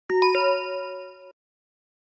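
A two-note chime sound effect: two bell-like dings about a third of a second apart, the second a little higher, ringing together for about a second before cutting off suddenly.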